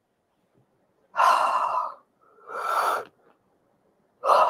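A woman making two loud breathy gasps, each under a second long, the first about a second in and the second soon after.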